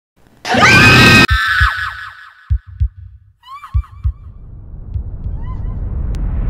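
Horror intro sound effects: a loud, shrill scream that cuts off suddenly just over a second in and trails away in echoes. Three slow double heartbeat thumps follow, then a rising rush of noise near the end.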